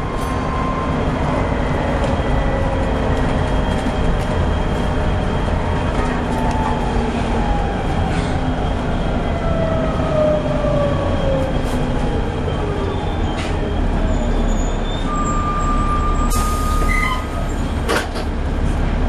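Volvo B7TL double-decker bus under way, heard from inside: a steady rumble from the engine and drivetrain, with a thin whine that slides down in pitch through the middle and a short hiss near the end.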